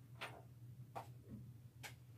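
Near silence over a low steady hum, with three faint clicks less than a second apart.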